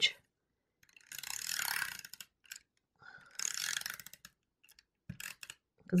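Adhesive tape runner rolled along a piece of paper in two strokes of about a second each, its gears whirring, then a few small clicks near the end.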